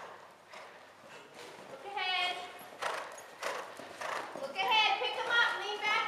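A horse's hooves beating at a canter on sand arena footing, soft irregular thuds, with high-pitched voices talking about two seconds in and again from about four and a half seconds.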